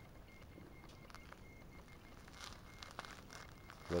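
Quiet outdoor ambience with a low, even background hiss and a few faint scattered clicks and rustles.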